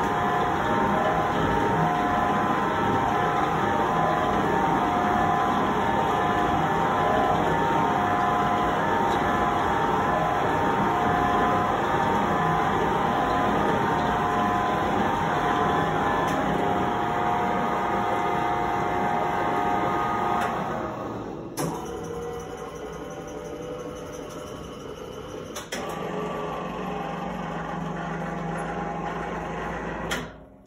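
L4-KhT2V spiral dough mixer running, its kneading drive and belt pulley making a steady whine with several tones. About 20 seconds in the drive stops and a click follows. A quieter motor then runs as the head with the spiral kneading hook is lifted, with another click and a low hum near the end.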